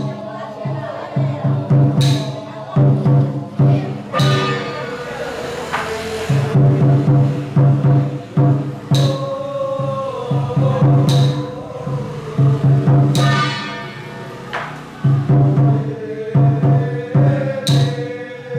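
Taiwanese temple ritual percussion: a drum beaten in quick runs of strokes, with ringing metal crashes every few seconds and voices chanting over it. This is the drumming and incantation that Penghu xiaofa ritual masters use to call a deity down onto a spirit medium.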